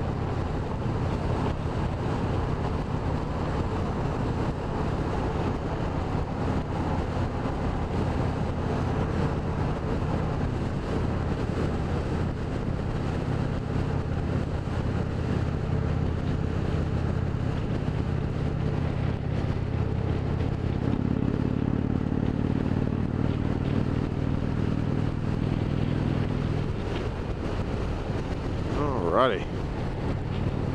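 An Indian Springfield Dark Horse's 111 cu in (1,811 cc) Thunder Stroke V-twin runs steadily at highway speed, under wind rushing over the handlebar-mounted camera and tyre noise from broken pavement. The engine note grows a little louder for several seconds past the middle.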